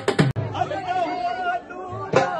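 Fast strokes on a double-headed barrel drum cut off suddenly a moment in, and a crowd of people chattering and calling out follows.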